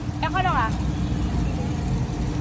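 Steady low rumble of background noise with one constant hum running under it, and a short spoken word near the start.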